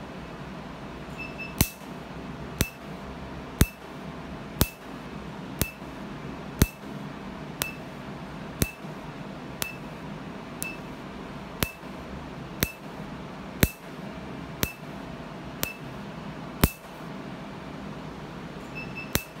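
Picosecond laser handpiece firing single pulses on a lip mole, one sharp snap about every second starting about a second and a half in, each with a short faint beep. The pulses are shattering the mole's pigment.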